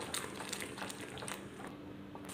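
Thick apple jam cooking and being stirred in a pan on the stove: soft, irregular wet clicks and pops from the bubbling puree and the spoon.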